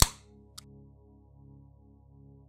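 A single sharp impact-style sound effect at the very start, ringing out briefly, with a faint click about half a second later. Soft, sustained ambient music plays underneath.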